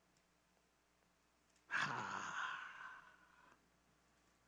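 A man's long sigh: one breathy exhale that starts suddenly a little under halfway in and fades out over about two seconds.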